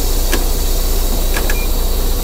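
A semi truck's diesel engine idling, heard inside the cab, under a loud, steady hiss that cuts off suddenly just after the end, with a few faint clicks.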